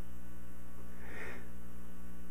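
Steady electrical mains hum in the sound-system feed, with a faint soft noise about a second in.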